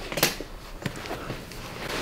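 Low handling noise: clothing rustling and a few faint clicks as hands position a patient lying face down on a padded chiropractic table, before the adjustment.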